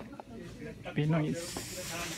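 A brief spoken syllable about a second in, then a steady high hiss that starts about halfway through and keeps going.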